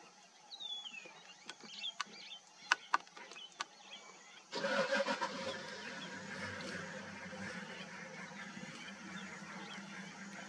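Birds chirp faintly and a few sharp clicks sound over the first few seconds. About halfway through, a vehicle engine starts suddenly and runs on at a steady idle.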